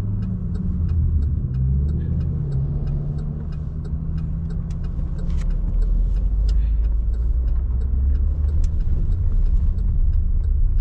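Inside a car's cabin, engine and road noise as the car pulls away. A rising engine note comes in the first few seconds, and a deeper road rumble builds after about five seconds. A steady fast ticking, about three a second, runs through it.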